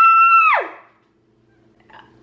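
A woman's high-pitched squeal of excitement, held steady for about a second, then sliding down and dying away. After it there is quiet room tone with a faint steady hum.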